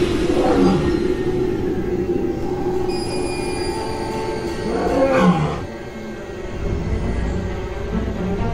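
A lion roaring twice, once at the start and again, louder, about five seconds in, each roar falling in pitch. Under it runs a steady drone of background music.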